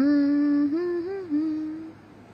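A woman humming with closed lips for about two seconds: a held note, a short rise and fall in the middle, then back to the held note before it stops.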